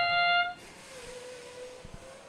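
The held final brass-like note of the competition field's match-start fanfare, cutting off about half a second in. A faint steady background hum follows.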